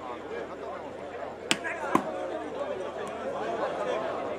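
Two sharp slaps of a volleyball being struck hard, about half a second apart, over the steady chatter of a large crowd.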